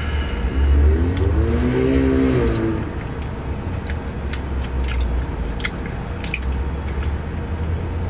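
A takeout chili cup and plastic spoon being handled, giving a run of sharp clicks and taps in the middle, over a steady low rumble in the car cabin. Early on a short closed-mouth hum rises and falls in pitch.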